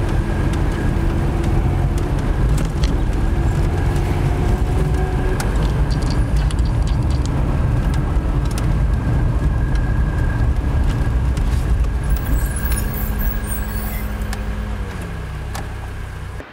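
Car driving, heard from inside the cabin: a steady low rumble of engine and road noise with scattered small clicks and rattles, easing off slightly near the end.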